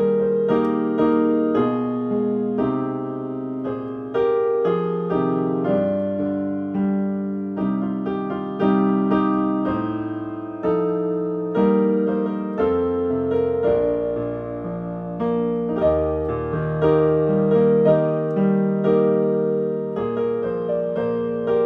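Digital piano playing a classical piece: a steady flow of single melody notes over lower accompanying notes, with no pauses.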